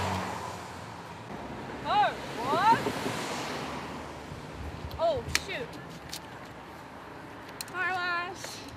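Cars passing on the road, tyre and engine noise swelling and fading, with a second pass about three seconds in. Short rising-and-falling shouts from people break in about two and five seconds in, and a wavering call comes near the end.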